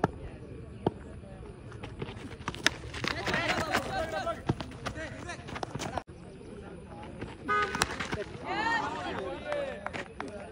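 A cricket bat hits the ball with one sharp crack, then several players and spectators shout excitedly while the ball flies high.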